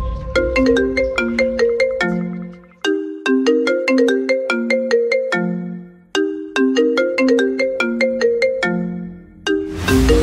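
A ringtone melody of quick, short, clearly pitched notes. The same phrase plays three times, each time ending on a held low note.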